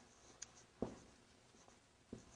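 Faint marker writing on a whiteboard: light high strokes with two soft taps a little under a second in.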